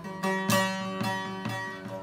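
Bağlama (long-necked Turkish saz) played solo, plucked notes struck about twice a second and left ringing, an instrumental passage between sung lines.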